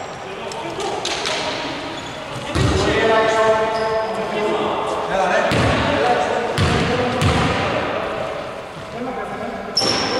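A basketball bounced a few times, slowly, on a wooden gym floor as a player dribbles at the free-throw line before his shot. Voices call out in a large, echoing hall.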